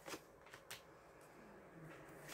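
Faint taps and slides of tarot cards being drawn from the deck and laid down on a cloth-covered table, about three light taps in the first second.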